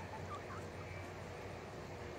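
Young hens foraging in loose dirt, giving a couple of faint short chirps about a third of a second in, over a steady low background hum.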